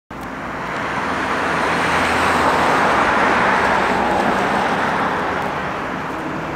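Road traffic noise from a vehicle going past on the street, swelling over the first couple of seconds and then slowly easing off.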